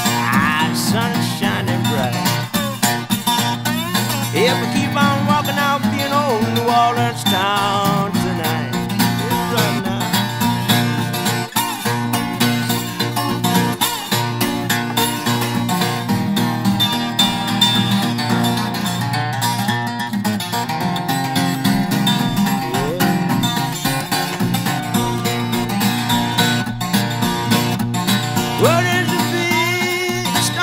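Instrumental break in an acoustic country-blues song: guitar-led playing with no singing, some notes bending in pitch.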